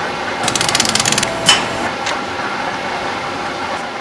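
Steady mechanical hum of print-shop machinery, with a quick rattling run of clicks about half a second in and a single sharp click just after.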